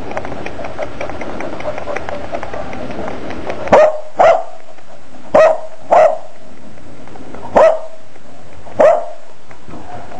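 Puppy giving six short, high barks, starting a little under four seconds in and spaced about half a second to a second and a half apart, over a steady background hiss.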